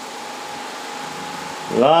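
Steady hiss with a faint steady tone from the open microphone and loudspeaker system during a pause in the recitation. Near the end a man's voice starts chanting a line of majlis recitation through the loudspeakers.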